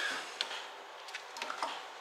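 A few light clicks and knocks as a car battery is handled and settled into its battery tray by gloved hands.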